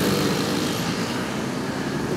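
Road traffic: motorcycles and cars passing close by, a steady mix of engine and tyre noise.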